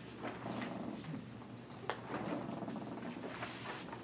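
Paper rustling and small clicks of handouts being handled around a conference table, with one sharper click near the middle, over a steady low room hum.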